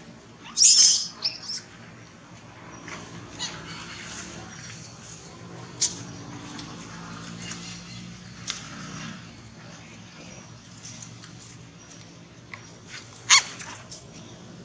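Macaques giving a few short, sharp, high-pitched squeals. The loudest comes just under a second in and another near the end, over a steady low background hum.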